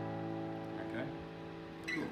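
Acoustic guitar chord, an A7 strummed across the strings, ringing out and slowly dying away. A short soft noise comes near the end as the strings are touched.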